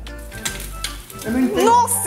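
An egg dropped into hot fat in a small frying pan, sizzling, over background music. About a second in, a voice rises loudly over the sizzle.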